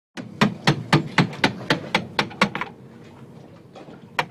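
A hammer striking in a quick, even rhythm, about four blows a second. It stops after about ten blows, a little past halfway.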